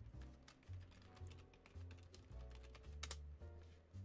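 Faint typing on a computer keyboard: irregular clicks over low background tones that change pitch in steps.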